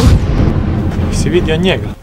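A sudden loud boom like an explosion, rumbling on for nearly two seconds, with a short voice near the end.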